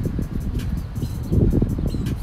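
Low, uneven rumble of outdoor background noise, strongest about a second and a half in.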